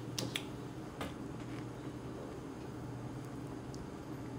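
Mouth sounds of someone tasting a spoonful of ice cream: a few sharp lip-smacking clicks in the first second, then only a steady low hum underneath.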